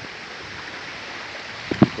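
River water running fairly full over and between rocks: a steady rushing hiss. Two brief knocks come near the end.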